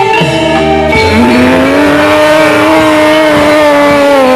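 Live music for a jaran kepang dance. The drumming breaks off, and about a second in a long, low sliding tone swoops up, holds, and bends down near the end over sustained ensemble notes.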